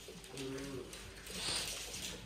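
A dog making short, low, cooing grumbles in the first half, followed by a brief breathy rush about one and a half seconds in.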